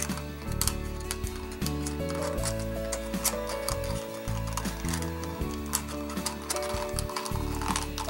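Background instrumental pop music with held notes over a bass line that changes every second or so, with light clicks scattered through it.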